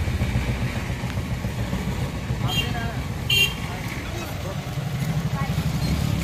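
A motor vehicle engine running steadily close by, with a fast even low pulse. Two short high-pitched sounds cut in over it a little past the middle.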